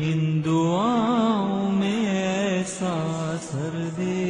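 A single voice chanting a slow melody in long, drawn-out notes that bend up and down in pitch, with a brief break near the end.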